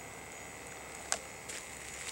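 Faint background hiss with a single short, sharp click about a second in as a hard plastic pistol case is opened.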